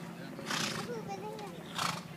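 A horse snorting twice: two short breathy blasts about a second apart, over voices in the background and a steady low hum.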